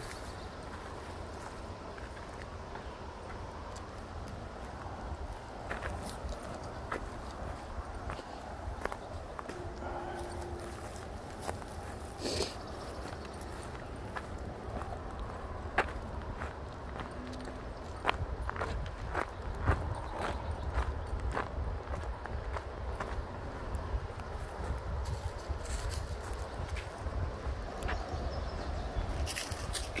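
Footsteps on a dry dirt trail, crunching on dry grass and twigs, over a steady low rumble; the steps grow louder and sharper about two thirds of the way in.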